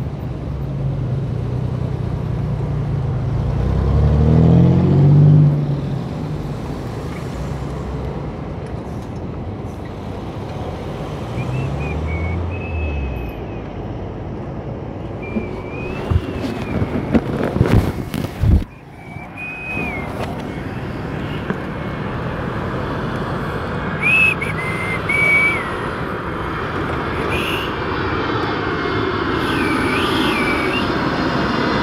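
Road traffic with cars and buses going by: a heavy vehicle's engine passes loudest about four to five seconds in, and another, fainter, near twelve seconds. A cluster of knocks from the phone being handled comes a little past halfway, and short high chirps sound now and then in the second half.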